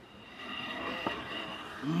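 Quiet studio kitchen room noise, with a single light click about halfway through as a ceramic serving plate is handled on a wooden counter.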